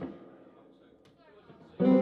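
Electric guitar being plucked: a single note right at the start that quickly fades, then a louder chord near the end that rings on.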